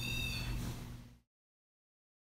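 A steady, flat electronic beep lasting about half a second, over a low steady hum; the sound cuts off abruptly just over a second in.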